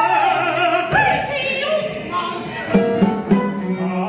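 Operatic singing in English, a wide-vibrato vocal line over a small chamber ensemble, with sharp accented strikes from the ensemble about a second in and twice near the end.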